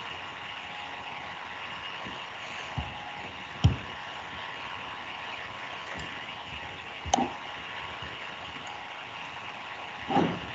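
Steady background hiss of an open video-call microphone line with faint steady hum tones, broken by a few short soft sounds: one at about three and a half seconds and another at about seven seconds.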